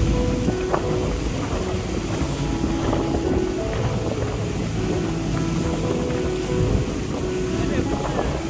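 Small motorboat underway at speed: engine running, water rushing along the hull and wind buffeting the microphone, over quieter background music.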